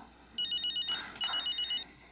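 Mobile phone ringing: an electronic ringtone in two short bursts of about half a second each, made of rapid, pulsed high beeps.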